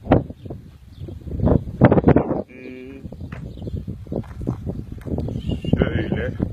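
A single short call from a farm animal, one steady pitched cry lasting about half a second, comes about two and a half seconds in. Around it is louder, irregular scuffing and crackling noise.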